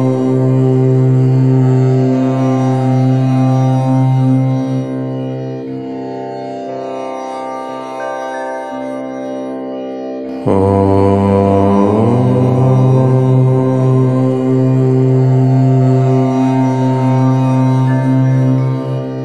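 Om chanting: a long, steady, low-pitched Om held on one note. It softens about four and a half seconds in, and a new Om starts abruptly about ten and a half seconds in.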